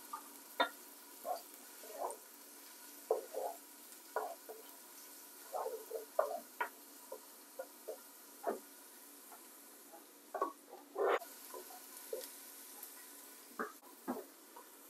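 A spoon stirring chopped onions and garlic frying in coconut oil in a nonstick pot: faint sizzling under irregular light taps and scrapes of the spoon against the pan.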